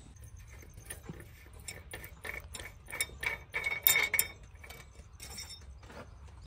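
A quick run of sharp metallic clicks and clinks as hands handle the rubber-booted gear lever on a tractor's cast-metal gearbox housing, loudest and most rapid about three to four seconds in.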